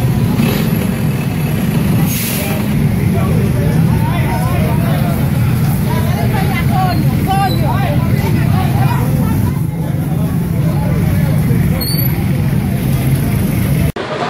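A fire engine's motor running steadily with a low drone, with people's voices talking and calling over it. A brief hiss comes about two seconds in.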